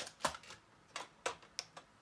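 Makeup brushes being picked through, their handles giving about half a dozen light, irregular clicks and clacks.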